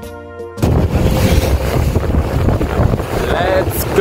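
Brief music, then about half a second in a sudden switch to the loud rush of wind on the microphone and water noise from a motorboat running fast, with a short shout near the end.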